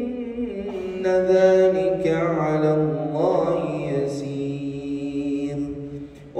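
A man's melodic Quran recitation, chanted in one long drawn-out phrase with ornamented turns of pitch around the middle, the voice sinking slowly in pitch before breaking off at the end.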